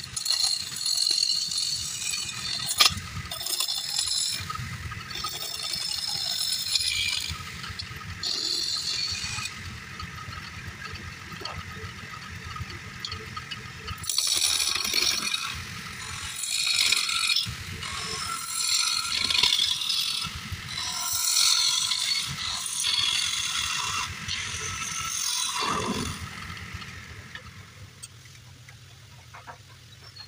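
A hand-held turning tool cutting a small wooden bowl blank spinning on a wood lathe: a scraping, rattling cut that comes in passes with short pauses between them. Near the end the cutting stops and the sound falls away.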